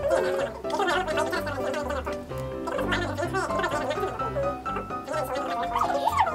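Background music with a steady bass line and held notes, with a garbled, rapidly wobbling voice-like sound laid over it.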